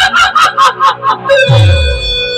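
Music effects from a DJ loudspeaker system: a fast run of short, identical rising-and-falling calls, about five a second. About one and a half seconds in, a deep tone slides steeply down in pitch under a held high note.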